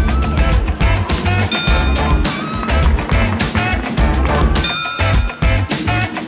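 Upbeat background music with a steady, heavy bass beat.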